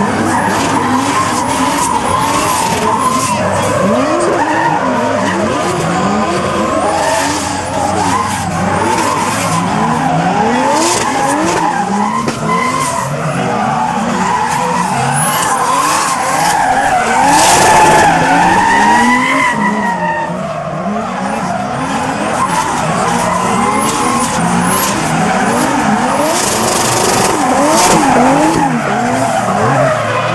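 Drift cars sliding in tandem: engines revving up and down again and again as the throttle is worked, over the hiss and squeal of tyres spinning and sliding sideways on asphalt.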